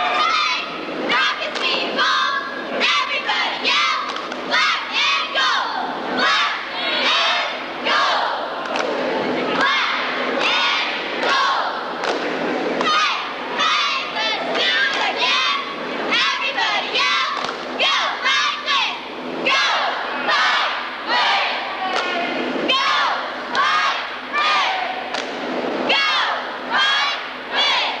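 Cheerleaders shouting a rhythmic chanted cheer, the words punched out about once a second, with the crowd in the gym joining in.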